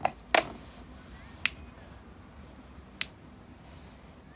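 Pen knocking against a wooden desk while writing: four sharp clicks at uneven gaps, two close together at the start, the second of them the loudest.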